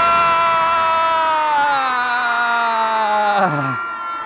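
A crowd of schoolchildren shouting a long cheer together. It is one held note that slides slowly lower and breaks off about three and a half seconds in.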